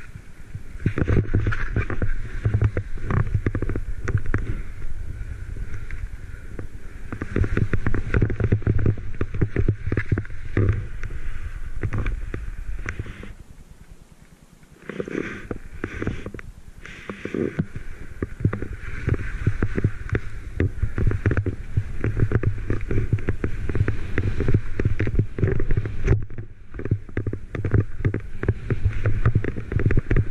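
Skis rushing through deep powder snow, with wind rumbling on a chest- or helmet-mounted action camera's microphone. The noise surges unevenly with the turns and drops away briefly about halfway through.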